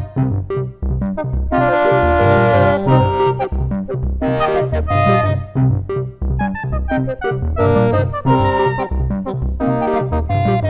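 Axoloti synthesizer played from a ROLI Seaboard Block: a steadily repeating bass pattern under sustained chords and shorter brass-like notes. The sound runs through delay echoes and reverb.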